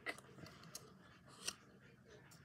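Faint handling of a silicone PocketBac holder and its metal clip: a few small clicks, the sharpest about one and a half seconds in.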